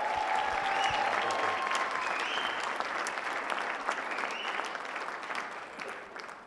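Audience applauding, the clapping fading gradually toward the end.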